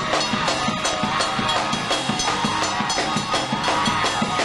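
Up-tempo gospel music from a choir and band, with a quick, steady drum beat.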